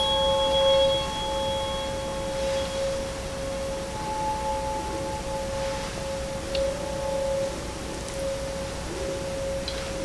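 A pair of DNA nucleotide tuning forks, tuned to about 538–550 Hz, ringing on after being struck with a mallet: one steady pure tone that slowly swells and fades. A faint higher overtone dies away in the first couple of seconds, and a few faint ticks come near the end.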